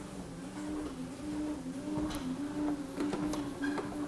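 Electric treadmill motor running, a steady hum that dips and swells about once a second in time with the strides. A few sharp knocks come near the end.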